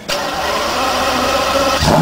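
Lamborghini Murciélago V12 starting up through its twin-pipe exhaust: a sudden loud catch, then a steady run. Near the end the note dips briefly and settles lower.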